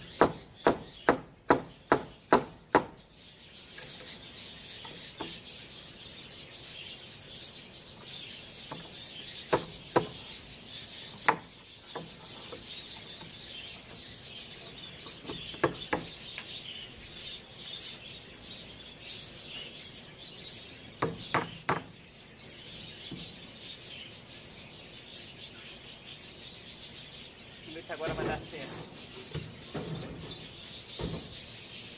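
Hammer driving nails into wooden stair-formwork boards. It opens with a quick run of about seven blows, then gives scattered single and double blows further on.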